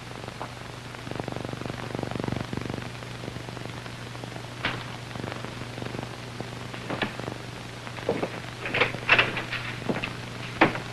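Surface hiss and steady low hum of an old 1940s optical film soundtrack, with faint clicks and, near the end, a few short knocks.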